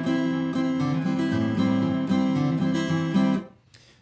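Steel-string acoustic guitar strummed with a pick: a run of downstrummed open chords about two a second, from the shape that gives A minor 7 and C. The ringing is muted abruptly near the end.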